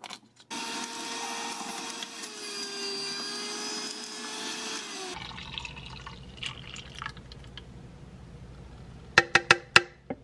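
Electric centrifugal juicer running while juicing celery: a steady motor whine with a slight dip in pitch, starting about half a second in and stopping abruptly after about four and a half seconds. Afterwards faint handling sounds, then a quick run of sharp clicks near the end.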